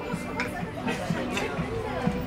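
Low conversation and chatter of several people around a dining table, with no one voice standing out.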